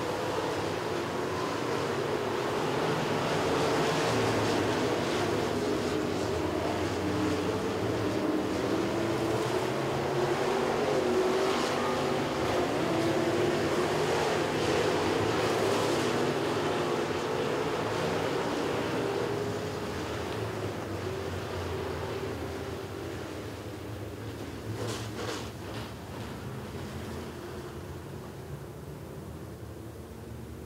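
Several dirt-track modified street race cars running hard around the oval, their engines wavering in pitch as they go through the turns. The engine sound builds to its loudest in the middle, then fades away over the last ten seconds or so.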